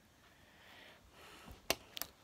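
Sticky white slime being pulled apart and kneaded by hand: a faint soft rustle, then a sharp click about three-quarters of the way through and a smaller click right at the end, as the slime snaps and pops off the fingers.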